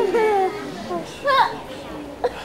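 A man's voice making wordless sounds: a wavering vocal sound that trails off early, then a short cry that rises sharply in pitch about a second and a half in.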